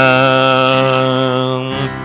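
A man singing one long held note at the end of a line of a worship song, slowly fading, over soft sustained accompaniment.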